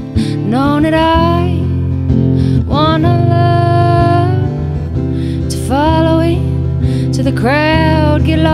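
A woman singing over a strummed acoustic guitar in a slow song: three long held vocal phrases, each sliding up into its note, over steady guitar chords.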